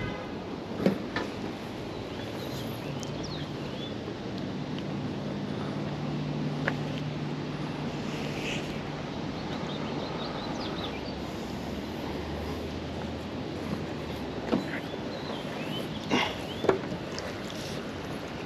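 Steady outdoor background with a low engine-like hum through the middle, and a few light knocks and rustles as a magnet-fishing rope is hauled in by hand, the knocks coming closer together near the end.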